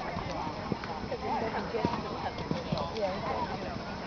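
A horse cantering on a sand arena, a few separate hoofbeats standing out over voices talking in the background.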